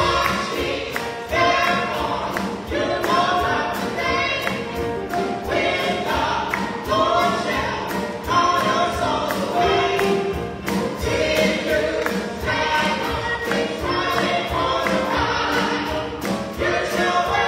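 Gospel praise song sung live by a small vocal group, backed by a band of drums and electric guitar keeping a steady beat.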